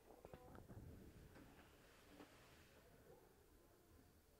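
Near silence, with a few faint short sounds in the first couple of seconds.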